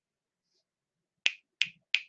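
Three quick finger snaps, evenly spaced about a third of a second apart, in the second half.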